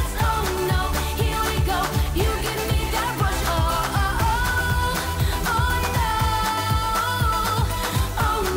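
A female pop singer sings live into a handheld microphone over a pop backing track with a steady drum beat. She holds a long, belted note in the second half.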